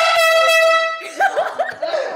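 Handheld canned air horn giving one loud, steady, single-pitched blast lasting about a second, then cut off and followed by laughter.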